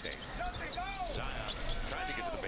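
Quiet NBA game broadcast sound: a basketball bouncing on the hardwood court and short, arching sneaker squeaks as players cut, with a commentator's voice low in the mix.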